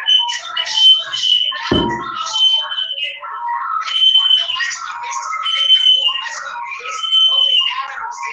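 A voice relayed from a cellphone speaker into a video-call microphone, sounding thin and tinny with no low end and too garbled to follow. One dull thump near two seconds in.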